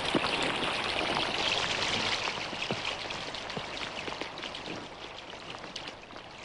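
Rain falling: a steady hiss made of many small drop ticks, fading gradually toward the end.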